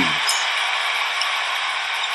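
Steady, even hiss-like background noise with no distinct events.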